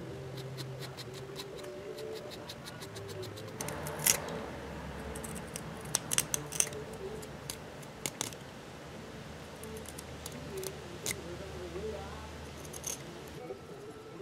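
A small knife whittling and a pencil marking a thin strip of wood by hand: a scattered series of faint clicks and scratchy cuts.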